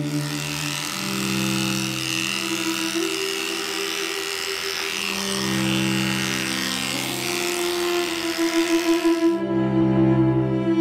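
Electric dog grooming clippers running steadily as they shave through a matted coat, stopping suddenly shortly before the end. Slow cello music plays underneath.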